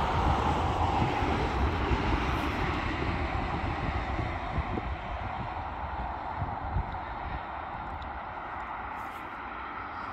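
Road traffic on a multi-lane highway: a steady hiss of tyres and engines from passing cars, loudest at first and fading away over the following seconds, with low wind rumble on the microphone.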